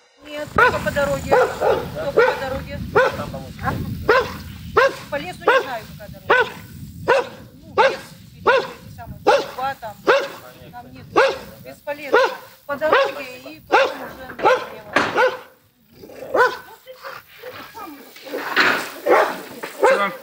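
A dog barking over and over, about two barks a second, with a short break about sixteen seconds in before the barking starts again.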